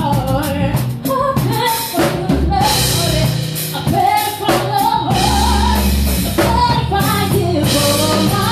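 Live band performing a soul-style song: a woman sings lead into a microphone over a drum kit and a steady bass line.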